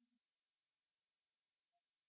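Near silence: an almost empty soundtrack.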